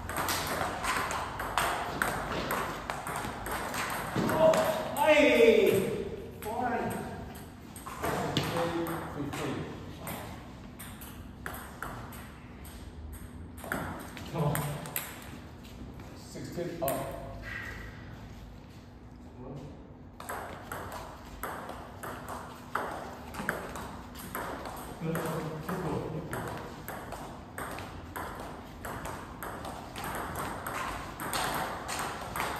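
Table tennis rallies: the ball clicking back and forth off bats and table in quick runs, with short pauses between points. A loud voice cries out about five seconds in, and short calls come now and then between rallies.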